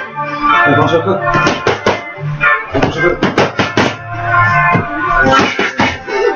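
A song with vocals plays on, with quick clusters of sharp slaps from boxing gloves striking focus mitts, two to four hits a few tenths of a second apart, repeating every second or two.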